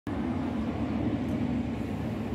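Steady low rumble of city street traffic, vehicle engines running on the road close by.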